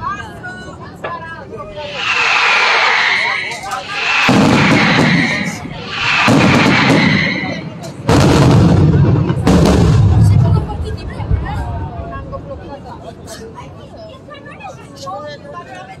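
Aerial fireworks display: about five loud booming bursts with rushing hiss between two and eleven seconds in, some starting with a sudden heavy bang. Scattered crackling follows and fades away.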